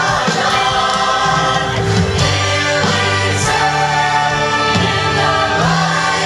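Mixed-voice youth show choir singing into handheld microphones over a live band, amplified through PA speakers, with sustained bass notes beneath the voices.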